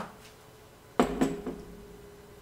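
A small glass plant mister set down on a tabletop: a single sharp clink about a second in, dying away quickly.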